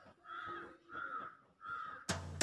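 A bird calling: three short, evenly spaced calls about two-thirds of a second apart.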